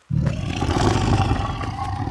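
A big cat's roar as a cartoon sound effect: one long, loud roar that starts suddenly and fades out near the end.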